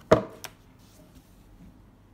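A sharp knock as a tablet case is put down on a wooden desk, followed by a lighter click about half a second in.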